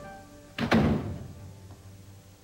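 A door shutting with a single heavy thunk about half a second in, over quiet background music.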